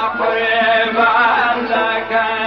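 Male voice singing a Kurdish folk song in long, ornamented phrases whose pitch wavers and slides.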